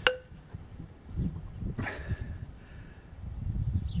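A single sharp metallic clink with a brief ring as a steel rock hammer is set down on a wooden stump among lumps of coal. Softer scraping and rustling follow as coal lumps are handled.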